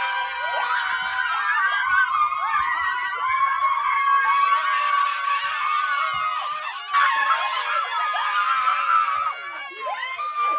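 A group of women screaming and shrieking in excited surprise, many high voices overlapping, with a fresh loud burst of screams about seven seconds in.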